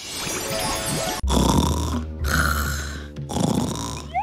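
Exaggerated, cartoon-style snoring of a sleeping girl, two long snores with a deep rumble starting a little over a second in, over light background music.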